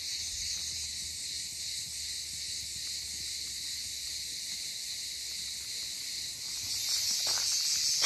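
A steady, high-pitched chorus of chirring insects.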